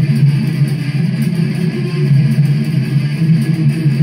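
Electric guitar playing a fast, continuous death metal rhythm riff.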